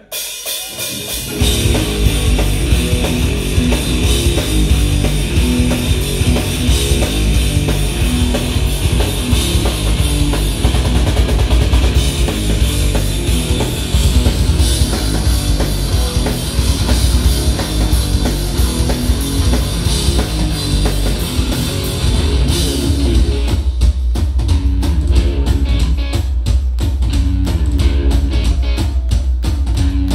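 A live hard rock band playing loudly: electric guitar, bass and drum kit come in together about a second in. About two-thirds of the way through, the cymbal wash drops away and the music turns to a choppier, hit-by-hit rhythm.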